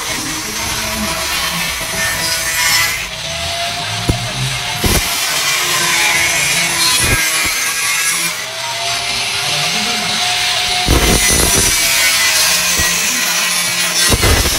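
Angle grinder with a thin cutting disc slicing stainless steel sheet: a continuous high, hissing cut whose sound eases twice as the disc comes off the metal, the motor's pitch gliding up and back down each time.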